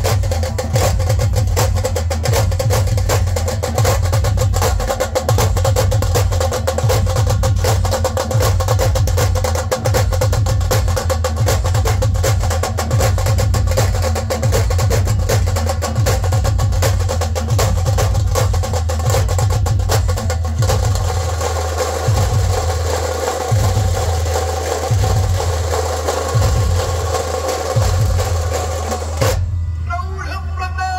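Dhol-tasha drumming: a dense, fast roll of tasha strokes over deep, booming dhol beats. About two-thirds of the way in, the crackling roll thins out and the low beats come through more plainly, and the high strokes stop just before the end.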